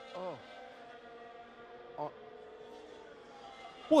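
Faint, steady drone of Formula 1 cars' engines from race broadcast footage, several held pitches with no rise or fall.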